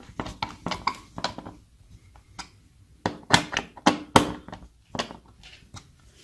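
Screwdriver turning the mounting screws of a Nest thermostat base: a run of small clicks and taps, with a second cluster of sharper knocks about three to five seconds in.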